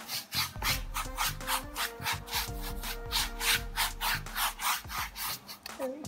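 Flat paintbrush stroked back and forth across a canvas in quick, even strokes, about three a second, wetting the canvas with water before painting.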